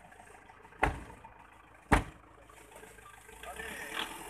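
Two doors of a pickup truck slammed shut, about a second apart, the second the louder.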